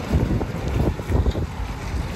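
Wind buffeting a phone's microphone outdoors, a low, gusty rushing noise that rises and falls unevenly.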